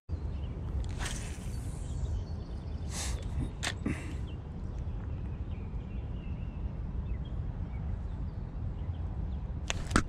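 Spinning rod being cast: a swish and line running off the reel about a second in, then a few short clicks, over a steady low rumble.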